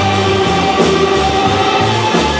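Live band playing loudly: an amplified banjo strummed hard together with a distorted electric guitar, in an instrumental stretch of held, overlapping chords.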